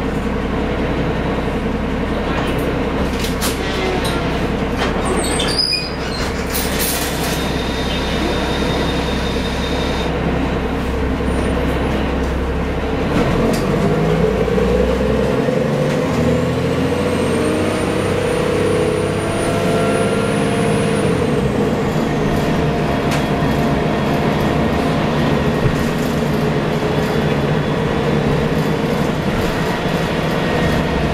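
Cabin sound of a 1990 Gillig Phantom transit bus with a Cummins L-10 diesel engine and Voith D863.3 automatic transmission under way, a steady low drone with road and body rattle. Near the middle the engine note rises in pitch and falls back over several seconds, with a faint high whine on top.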